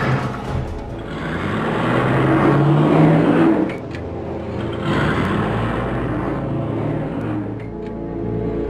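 A car driving past: engine noise swells with a rising pitch, cuts off suddenly about halfway, then swells and fades again, over background music.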